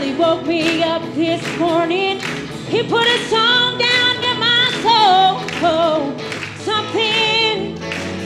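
Live gospel worship band: a woman singing lead with vibrato over guitars, bass and a steady drum beat.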